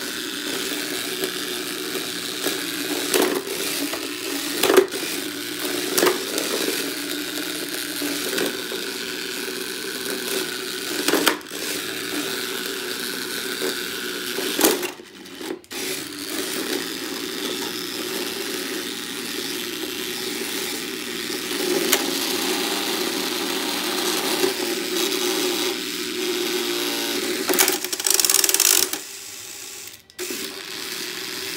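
Small electric motors of toy remote-control battle robots (Hexbug BattleBots) whirring steadily as they drive and push each other, with several sharp plastic knocks as they collide.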